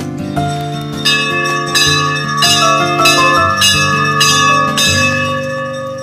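A hanging brass temple bell rung about seven times in quick succession, each strike ringing on, over background music.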